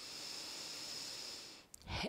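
A woman's long, deep inhale, heard close on a headset microphone, making a steady breathy hiss that lasts a little over one and a half seconds and fades out near the end.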